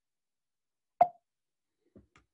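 A single short, sharp pop about a second in, otherwise near silence.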